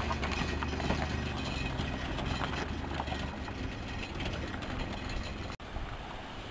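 A small van's engine running at low speed as it crawls past over a rough, rocky track, with its tyres crunching and knocking over loose stones. The engine hum falls away about halfway through as the van moves off. A brief sudden break in the sound comes near the end.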